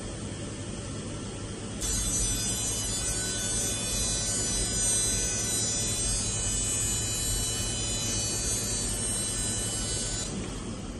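Excimer laser system giving a steady electric buzz with a high whine. It starts abruptly about two seconds in, over a low hum.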